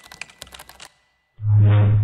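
Keyboard-typing sound effect: a quick run of about a dozen clicks over roughly a second, timed to text being typed onto the screen. About a second and a half in, a loud, low electronic bass note comes in and holds.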